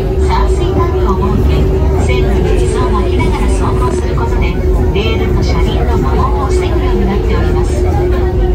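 Cabin sound of a Hakone Tozan Railway train car in motion: a steady low rumble with a constant hum, and people talking over it.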